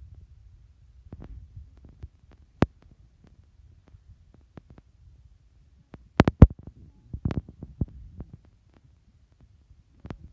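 Handling noise from a hand-held camera: a low rumble with scattered sharp clicks and knocks, the loudest a quick run of knocks about six seconds in, followed by a few more a second later.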